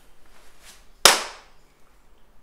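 A single sharp hand clap about a second in, with a short ring of room echo after it.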